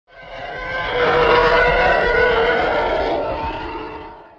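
Channel intro sound effect: a rough, roar-like tone that swells up over the first second, holds, then fades away as the logo comes up.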